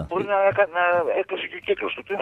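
Speech only: a person talking in conversation.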